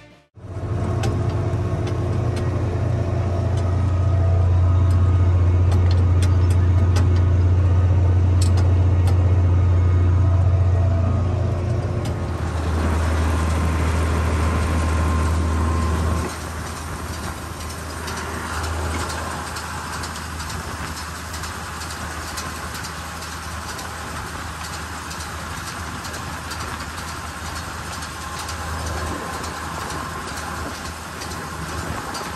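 Oliver farm tractor engine running steadily while it pulls a wheel hay rake, a loud low drone. The sound shifts about twelve seconds in and turns quieter a few seconds later.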